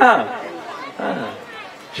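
Speech only: the end of a spoken phrase falling away in pitch, followed by softer, quieter speech.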